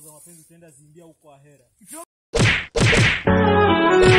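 Two loud whacking blows about half a second apart, a fight scene's punch sound effects as men beat someone on the ground. Background music cuts in loudly just after them. A faint voice is heard before the blows.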